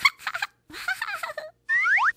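Cartoon vocal sound effects: short bursts of chirpy, squeaky, voice-like babble with bending pitch, ending in a quick rising whistle-like glide.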